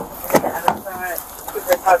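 A few sharp clicks or knocks, about three in the first second and a half, among short bits of voice, with a laugh starting near the end.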